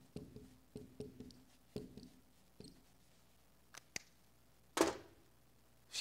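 Dry-erase marker squeaking on a whiteboard in a quick run of short strokes as letters are written, dying away after about three seconds. One louder short noise comes near the end.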